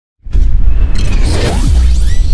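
Whooshing sound effects over a deep, steady bass rumble, cutting in suddenly after a brief silence at the very start.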